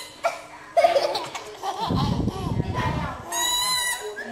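People laughing, then near the end a yellow plastic toy trumpet blown in one steady, high note lasting about half a second.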